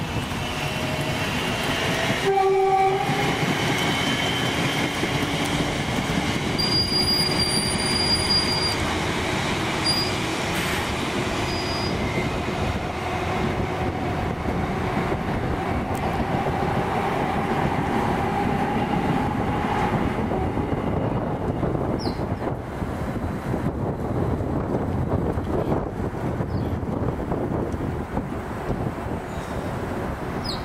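Volvo B5LH hybrid bus pulling away and driving off, a steady running noise with a faint drawn-out whine in the middle. A short two-note tone sounds about two seconds in.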